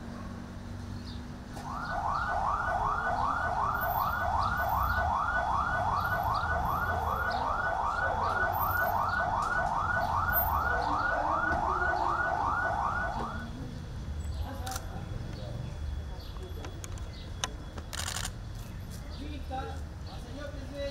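An escort vehicle's siren in yelp mode: a quick rising sweep repeated about two and a half times a second. It starts about two seconds in and cuts off after about eleven seconds.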